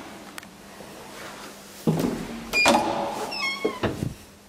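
Elevator doors being shut and closing: a rumble and clatter, then a high squeal that falls slightly in pitch, ending in a knock as the door comes to.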